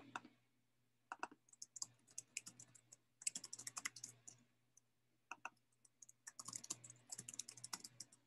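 Faint computer keyboard typing in several short runs of keystrokes, over a low steady hum.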